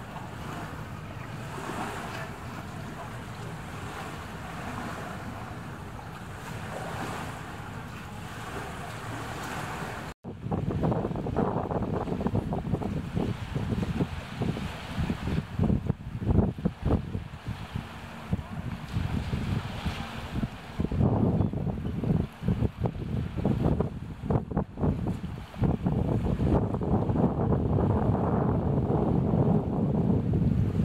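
Storm wind and flood water rushing outdoors, with wind buffeting the microphone. The noise is a steady rush at first, then after a brief break about ten seconds in it turns louder and gusty, with irregular low buffets.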